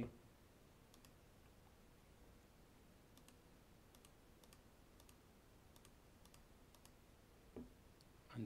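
Faint computer mouse clicks, a dozen or so scattered over several seconds, against near silence.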